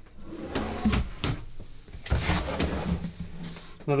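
Plywood cabinet drawers on metal slides being slid shut and pulled open, with a few sharp knocks as they stop. The slides are stiff, set to hold the drawers shut while driving.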